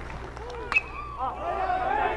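A metal baseball bat strikes a pitch once with a sharp ping about three-quarters of a second in, putting the ball up as a pop-up. Crowd chatter rises after it.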